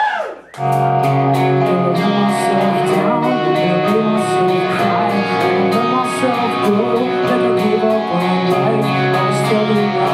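Rock band playing live: electric guitars holding chords over a steady drum beat with regular cymbal hits. The music starts about half a second in, after a brief drop in level.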